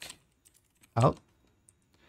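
Computer keyboard typing: a short keystroke click at the start, then a few faint scattered key ticks, as an output channel name is entered.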